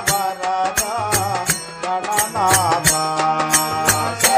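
Telugu devotional bhajan in Todi raga and Adi tala: an ornamented melody with sliding pitch over a steady drone. Sharp percussion strokes come at a regular beat.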